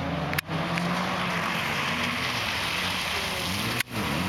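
Rally car engine running steadily on the stage, with road and wind noise around it. The sound drops out briefly twice, about half a second in and just before the end.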